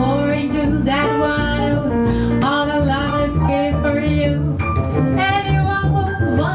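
Live jazz samba: a female vocalist singing over piano and bass.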